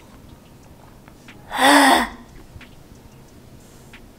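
A woman's short, rasping vocal noise of disgust, about half a second long, about a second and a half in: her reaction to a sip of coffee that she finds bad. Faint small clicks of sipping come before it.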